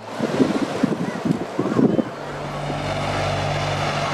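Zubr-class military hovercraft approaching a beach: wind-blown rumble of spray with faint voices, then, about two seconds in, a steady low drone from the hovercraft's engines.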